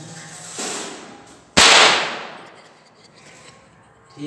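A rubber balloon bursting with one sharp bang about one and a half seconds in, its echo dying away off the bare room walls.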